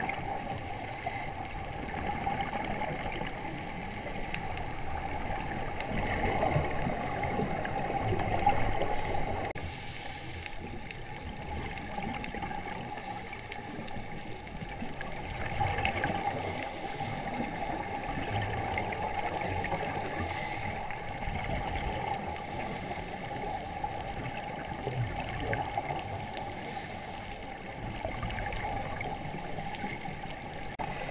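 Underwater wash and gurgling of scuba divers' exhaled bubbles heard through the camera's housing, swelling louder every several seconds.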